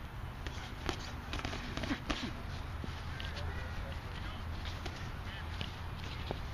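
Boxing gloves smacking against gloves and headgear during sparring: a quick flurry of sharp slaps in the first couple of seconds, then scattered hits, with feet shuffling on grass and a steady low rumble underneath.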